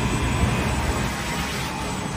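Steady whooshing air noise with a low rumble from a fan-and-rotor test rig running: air moving across a motor-spun cylinder rotor.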